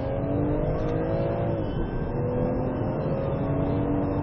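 Police patrol car's engine accelerating hard, heard from inside the cabin: the revs climb, drop at a gear change about halfway through, then climb again over steady road noise.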